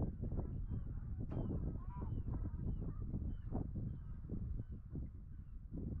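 Wind rumbling on the microphone, with a bird calling over it: short high notes falling in pitch, about two a second, and a lower run of calls about two seconds in.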